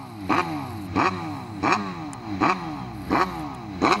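An engine revved in six quick throttle blips, about 0.7 s apart, each sweeping up and falling back in pitch, like a motorcycle being blipped.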